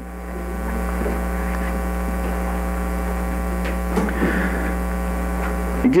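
Steady electrical mains hum with a buzz of evenly spaced overtones.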